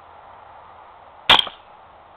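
A single rifle shot about a second in: one sharp crack with a short ringing tail, over a faint steady hiss.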